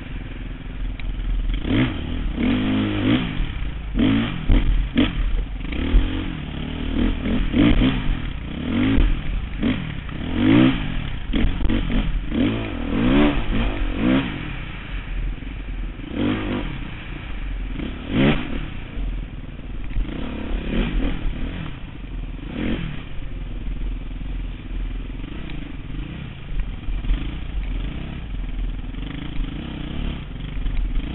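Dirt bike engine revving up and down over and over through the first half as the bike works over rocky trail, with sharp knocks and clatter from the bike hitting rocks and roots. From about halfway it runs more evenly at lower revs, with fewer knocks.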